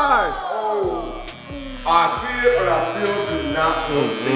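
Corded electric hair clippers buzzing steadily as they shave a man's head, with people talking over the hum.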